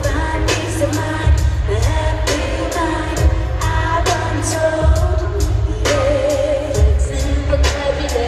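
Live pop band performance: female vocals singing a melody over bass and drums, picked up by a phone in a large arena.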